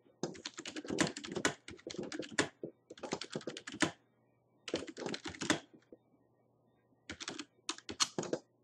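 Typing on a computer keyboard: quick runs of key clicks in three bursts, with short pauses between them.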